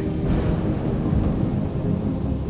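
Thunder-and-rain sound effect in a hardstyle track, a dense low rumble with a sustained synth pad faintly underneath and no beat.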